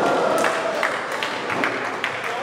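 Bowling pins clattering and settling after the ball hits them: a string of short, sharp clacks at uneven intervals over the din of the bowling alley.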